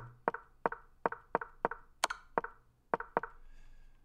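An online chess board's move sound, a short wooden knock, played about ten times in quick succession as the game is stepped through one move at a time.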